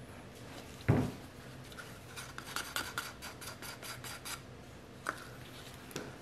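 A blue spatula stirring thick soap batter in a plastic bucket. There is a dull thump about a second in, then a run of quick scraping strokes, about five a second, for around two seconds, and a single click near the end.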